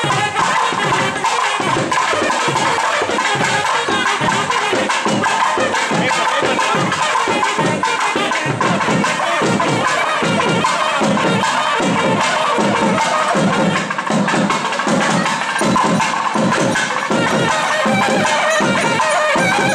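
Temple procession music: a thavil drum beating a fast, steady stream of strokes under a continuous, reedy nadaswaram melody.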